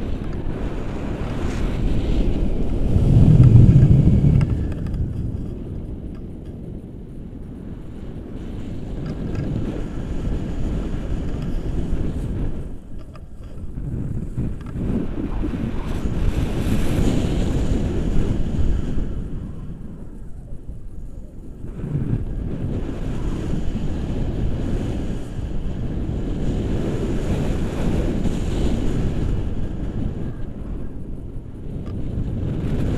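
Wind buffeting a handheld action camera's microphone in flight under a tandem paraglider: a low, rushing rumble that rises and falls in gusts, loudest a few seconds in.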